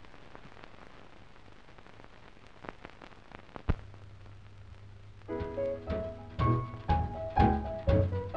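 Faint hiss and a few clicks of an old film soundtrack, then about five seconds in a swing dance band strikes up an introduction: sustained chords with bass and accented hits about twice a second.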